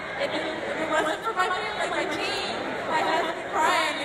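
Indistinct voices and chatter in a large hall, with no clear words.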